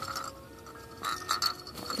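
Crib bedding fabric being handled and tucked into place, a soft rustling with a few light clicks about a second in.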